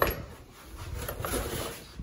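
Handling noise as a boxed faucet and its cardboard packaging are picked up and moved: a sharp knock right at the start, then light rustling and small knocks.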